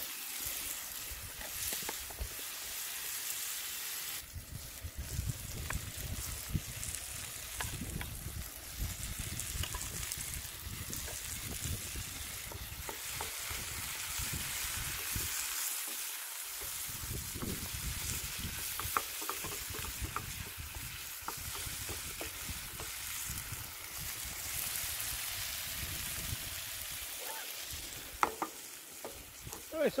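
Chicken and vegetables sizzling in oil and butter in a frying pan over a high-pressure propane burner, stirred with a wooden spatula that scrapes and clicks against the pan. A low rumble runs underneath and drops away briefly a couple of times.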